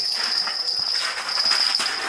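Ice-fishing reel being cranked as a hooked trout is reeled up through the ice hole: a steady, high-pitched whirring buzz.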